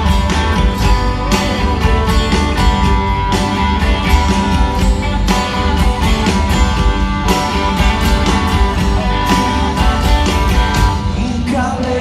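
A rock band playing live, with an electric guitar over steady drums and bass.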